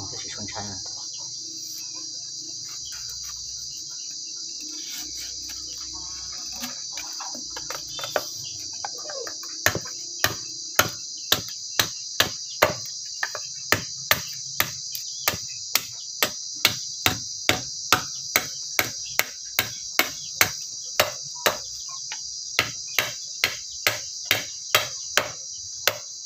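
Machete chopping into a bamboo stick set on a wooden block: sharp, evenly spaced strikes about twice a second, starting about eight seconds in and running until just before the end. A steady, high insect chorus sounds throughout.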